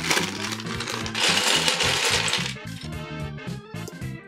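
Small plastic LEGO bricks clattering and rattling as a crinkly plastic parts bag is emptied, over background music with a steady beat. The clatter stops about two and a half seconds in, leaving only the music.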